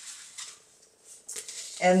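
Faint rustling of construction paper being handled on a desk, with a light click about half a second in.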